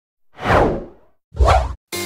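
Two whoosh sound effects for an animated logo intro, a longer one and then a short one, with music starting right at the end.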